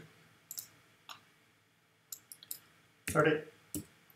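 Computer mouse clicks: a few single clicks, then a quick run of several clicks about halfway through and another sharp click near the end.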